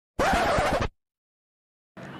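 A scratch sound effect added in the edit: one burst of harsh noise lasting under a second that cuts off abruptly, followed by dead silence.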